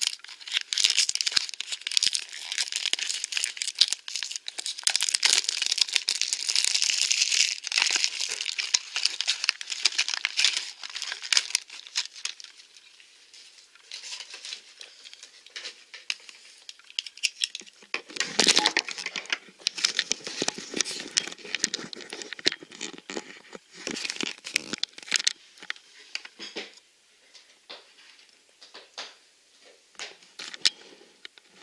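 Plastic blind-box packaging being torn open and crinkled by hand. The crinkling is dense and loud for the first dozen seconds, then quieter, with a loud rip about 18 seconds in and more bursts of crinkling after it.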